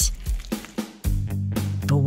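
A paintbrush pressed into wet acrylic paint on paper, giving a couple of soft squishes in the first second. Background music comes in about halfway through.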